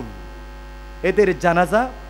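Steady low electrical mains hum in the microphone sound system, heard on its own in a pause for about a second, then a man's preaching voice resumes over it through the microphones.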